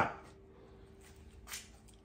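Quiet workbench with a faint steady hum. One brief soft handling sound comes about one and a half seconds in as the plastic locomotive body shell is moved on its chassis.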